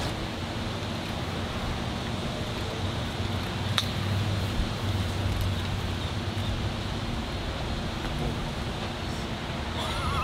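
A golf club strikes a golf ball once, a single sharp click about four seconds in, over steady wind and outdoor background noise.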